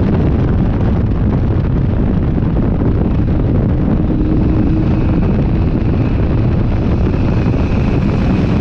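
Ariel Atom 4's turbocharged Honda 2.0-litre four-cylinder engine running under load at track speed, heard from the open cockpit with heavy wind noise on the microphone.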